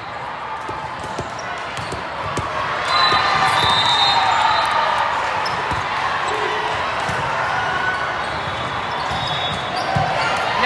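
Busy hall of many volleyball courts: balls bouncing and thudding on the floors under the chatter and calls of players and spectators, the voices swelling about three seconds in.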